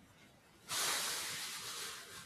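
A sudden burst of hiss-like noise that starts just under a second in and fades away over about a second.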